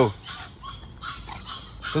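A pocket American Bully puppy gives one short yelp that drops sharply in pitch right at the start, then things go quieter.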